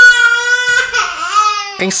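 A crying sound effect: one long, high-pitched wail, then a shorter wavering one that breaks off just before the narration resumes.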